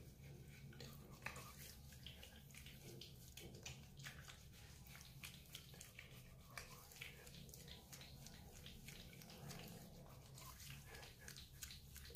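Faint, soft wet clicking and squishing of fingertips rubbing foaming facial cleanser over wet skin, over a low steady hum.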